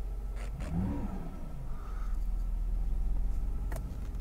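Mercedes 500SL V8 engine idling steadily, heard from inside the cabin, with a brief rise in pitch about a second in.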